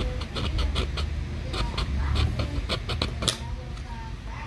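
Small round file scraping inside the plastic hub bore of a fan blade, a rapid, uneven series of short strokes, enlarging the bore so that a new shaft will fit.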